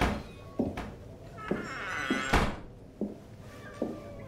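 A slow series of dull thuds, about five in four seconds and roughly evenly spaced, the loudest a little past halfway, over faint music.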